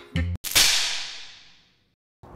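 A sudden loud electrical crack from a homemade wiring rig hooked into a wall electrical box, with a hissing tail that fades out over about a second: the sound of the experiment shorting out, the surge that destroys the TV.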